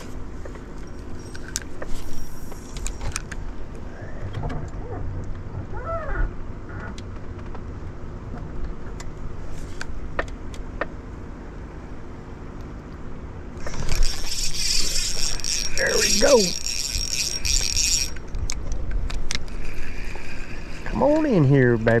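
Spinning reel being cranked to retrieve line, a high whirring with a thin steady whine that starts suddenly in the second half, stops after about four seconds, then resumes more faintly. A low steady hum runs underneath throughout.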